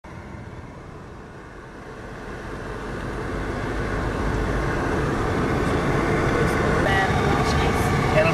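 A moving car's engine and road noise, heard from inside the cabin, a steady rumble that grows louder over the first few seconds. A voice starts near the end.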